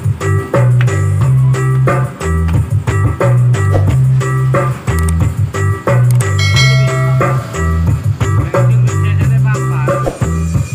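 Loud music with a heavy, pulsing bass line and a steady beat, played through a portable loudspeaker-box sound system mounted on a cart.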